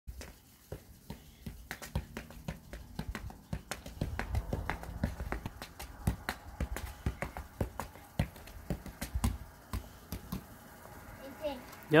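A basketball kicked up again and again off a sneaker and shin, a quick irregular run of sharp taps, about two or three a second, that stops about ten seconds in.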